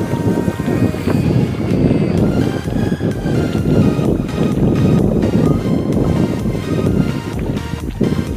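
Background music, over low wind and sea noise.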